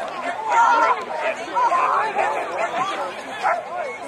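Overlapping chatter of several voices, none of it clear enough to make out words.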